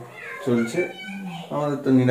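Voices talking, broken around the middle by a short, high, gliding meow-like call.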